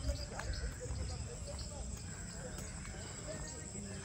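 Footsteps of a person walking on a brick-paved path, a regular soft tread over a steady low rumble on the microphone.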